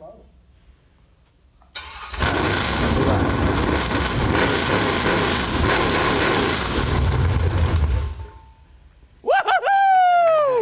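A 383 small-block Chevy stroker V8 with an Edelbrock top end, run unmuffled on open straight pipes: the starter catches about two seconds in and the engine runs loud for about six seconds, then shuts off. Voices cry out near the end.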